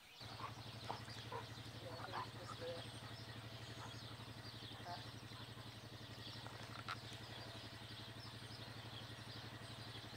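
A steady low hum of a running engine or motor, starting suddenly, with birds chirping here and there over it.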